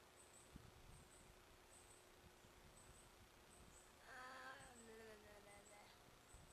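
Faint, very high double chirps repeating about once a second from a small animal, with a brief voice-like hum that slides down in pitch about four seconds in.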